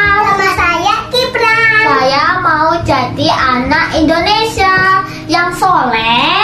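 Young children's high voices singing in short phrases, the pitch gliding up and down.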